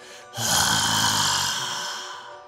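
A long, hissing breath from a horror voice performance, starting about half a second in and fading away, over a low steady background drone.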